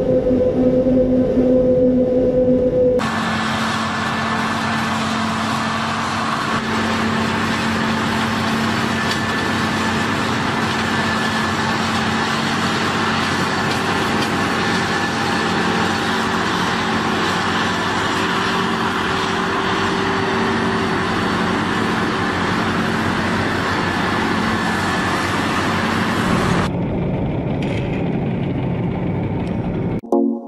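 Self-propelled forage harvester working under load: a steady engine note beneath a dense, even rush of chopped crop being blown out of the spout. It cuts in abruptly about three seconds in, after a different engine hum, and drops away shortly before the end.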